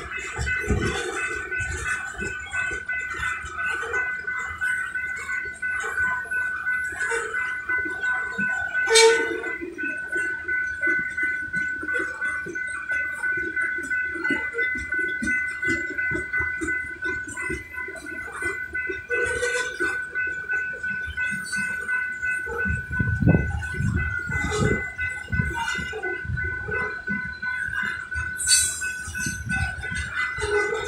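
Loaded rock hopper cars of a freight train rolling slowly past, with a steady high-pitched metallic squeal running over the low clatter of the wheels on the rails. A sharp clank comes about nine seconds in, and heavier rumbling follows later on.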